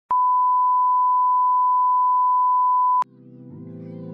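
A single steady electronic beep, one pure high tone about three seconds long that starts and stops with a click. Music with sustained chords fades in right after it, near the end.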